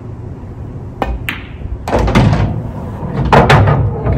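A pool shot on a bar table: a sharp click of the cue tip on the cue ball about a second in, a second click just after as the cue ball strikes the object ball, then heavier thuds and more clacks of balls hitting the cushions and pocket.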